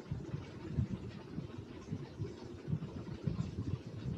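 Low, uneven rumbling noise coming over a video call, with no clear rhythm.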